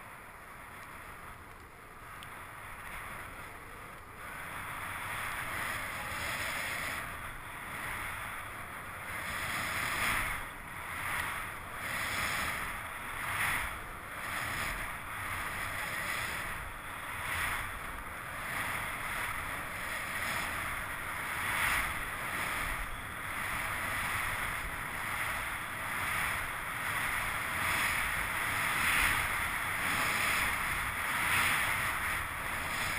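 Skis running through deep fresh powder snow with a steady rushing hiss. It grows louder over the first few seconds, then swells and eases about every second and a half.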